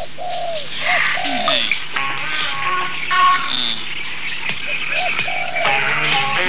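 Bird calls, short arching notes repeated several times, over background music.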